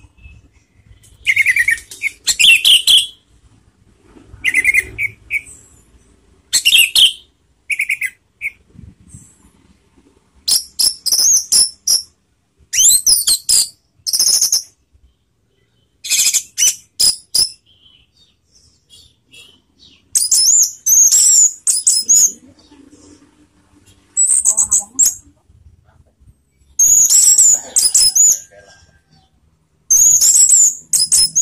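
Orange-headed thrush (anis merah) singing a run of short, varied, high-pitched phrases, each a second or two long with pauses between, the later phrases higher and more rapidly warbled.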